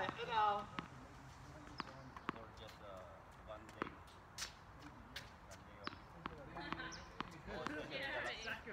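Tennis balls struck by rackets and bouncing on a hard court during a doubles rally: a series of sharp pops at irregular intervals. Indistinct voices are heard at the start and again near the end.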